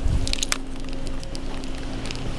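A wooden room door thudding shut, then a few sharp latch clicks about half a second in, over a steady low hum.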